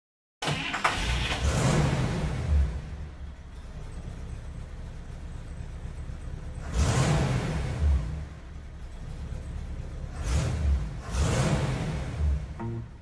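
Intro sound effects: three broad whooshing sweeps with a low rumble underneath, one near the start, one about seven seconds in and one about ten seconds in, with a quieter bed of sound between them.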